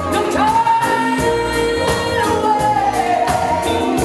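A woman singing a lovers rock song live with a band on drum kit and bass guitar, holding one long note that slides down about three seconds in, over a steady drum beat.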